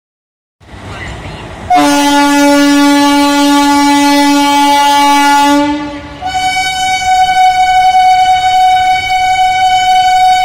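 Train horn blowing two long steady blasts: a lower-pitched one starts about two seconds in, and a higher-pitched one follows it from about six seconds in, still sounding at the end.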